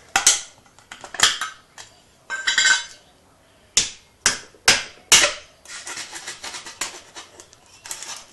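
Metal spoon levering at the lid of a Milo tin: a series of sharp metallic clicks and clinks against the tin's rim. About three-quarters of the way through they give way to a crinkling rustle as the spoon works into the foil seal under the lid.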